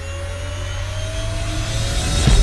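Motorcycle engine running at highway speed with wind noise, its pitch rising slowly as the bike speeds up.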